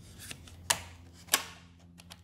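Two sharp plastic clicks about half a second apart as the choke lever of a Stihl MS180 chainsaw is moved between its settings, over a faint steady low hum.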